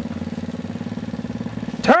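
Small four-wheeler (ATV) engine running steadily at low speed, an even, fast-pulsing hum that neither revs up nor dies away.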